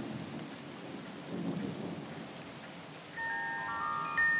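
A low rumbling hiss, then about three seconds in a cylinder music box starts playing: its steel comb is plucked into several high ringing notes that hang on and overlap.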